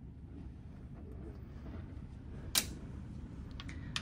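Cruise-cabin balcony sliding glass door being unlatched and slid open, with a sharp click about two and a half seconds in and a smaller click near the end, over a steady low rumble.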